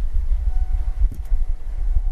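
Low, steady rumble of room noise with a faint steady hum above it and a faint tick about a second in.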